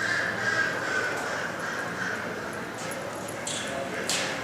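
Ducks quacking in broken runs over a murmuring crowd of spectators.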